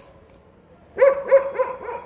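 A dog barking: a quick run of about four short barks starting about a second in.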